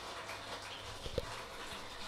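Vinyl LP playing on a Kuzma turntable with a Benz-Micro cartridge, the stylus in the lead-in groove before the music: faint crackle and hiss over a low hum, with one short low thump about a second in.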